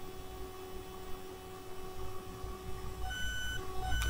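Quiet room tone: a faint low rumble with a few thin, steady high-pitched electronic tones. A further, higher whine comes in about three seconds in.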